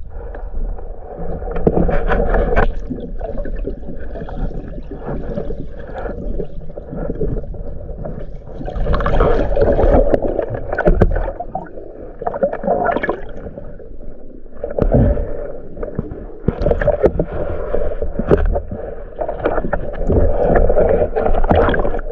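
Muffled water noise heard through an underwater camera housing: sloshing and gurgling that swells and fades every few seconds, with many small clicks and knocks.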